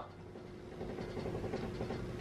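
Quiet room tone with a faint steady hum and no distinct sound event.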